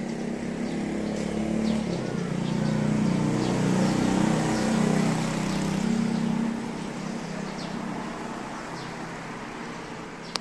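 A motor vehicle's engine running down below, growing louder over a few seconds and then fading away, with birds chirping faintly.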